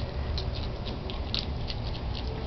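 Baby striped skunks eating dry pet food from a bowl: small irregular crunches and clicks of kibble, a few each second, over a steady low rumble.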